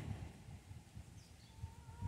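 Quiet outdoor background with a faint low rumble. Near the end, a faint, distant animal call begins: a thin, steady tone that breaks into short pieces.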